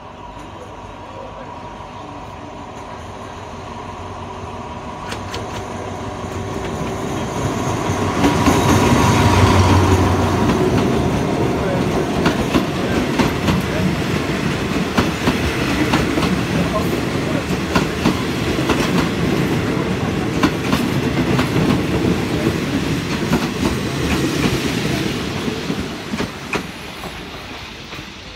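A diesel-hauled passenger train passing close by on the adjacent track. The locomotive's engine builds up to its loudest about nine seconds in. Then a long string of carriages goes by with steady clickety-clack from the wheels, fading near the end.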